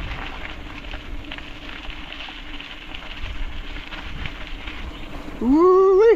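Mountain bike rolling on a dirt trail, a steady rumble of tyres and wind on the microphone with faint scattered crunches. Near the end, a loud rising shout, a whoop.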